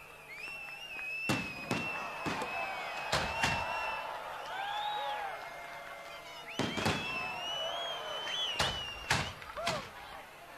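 Fireworks going off: about ten sharp bangs, in clusters, over long high whistling tones that waver and glide.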